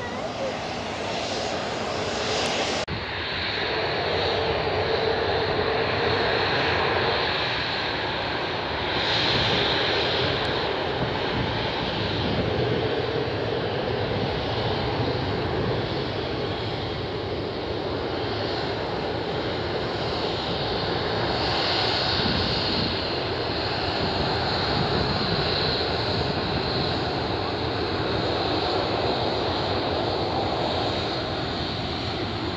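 Jet engines of a Boeing 767 airliner on final approach to landing, a steady jet noise with a high whine. The sound changes abruptly about three seconds in.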